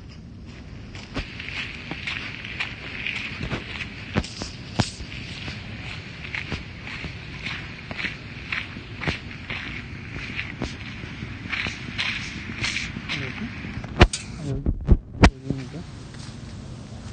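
Rain hissing and tapping on an open umbrella as it is carried along, with scattered sharp drips. A few loud knocks from the phone being handled come near the end.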